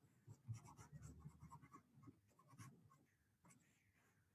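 Near silence: faint scattered rustles and soft clicks, as of small movements near an open microphone.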